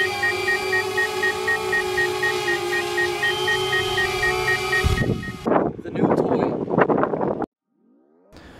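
Small quadcopter drone hovering close by, its propellers giving a steady whine of several held tones until about five seconds in. This is followed by a couple of seconds of irregular noise, and the sound cuts off suddenly near the end.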